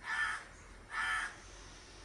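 A crow cawing twice, about a second apart: two short, harsh caws.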